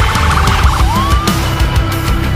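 Ambulance siren under loud heavy background music: a fast yelp that switches, just under a second in, to a rising wail that levels off.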